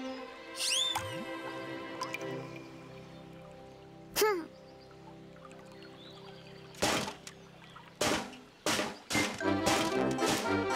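Cartoon soundtrack of soft background music with sound effects. A falling whistle-swish comes about half a second in as a fishing rod is swung up, and a louder swooping whistle comes about four seconds in. From about seven seconds in, several sharp hits lead into faster music.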